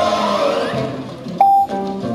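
Light background music from a filmstrip-style instructional soundtrack, with a short, steady electronic beep about one and a half seconds in: the filmstrip's cue tone to advance to the next frame.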